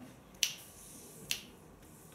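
Finger snaps, two sharp snaps a little under a second apart, keeping a slow beat that sets the tempo for a song.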